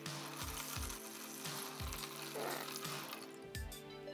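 Water pouring from a jug into a plastic tub, a steady splashing hiss, under quiet background music with a soft beat.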